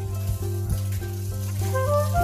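Background music with a steady beat and a rising melody, over the sizzle of chopped yardlong beans, potatoes and onions frying in oil in a kadhai.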